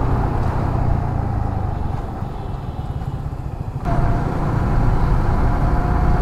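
Yamaha MT-15's single-cylinder engine running while riding, with steady road noise. About four seconds in the sound jumps abruptly to a louder, steadier engine note.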